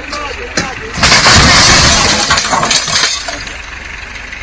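A lorry overloaded with sugarcane tipping over onto its side: a loud crash about a second in as the cab and load hit the road, dying away over about two seconds.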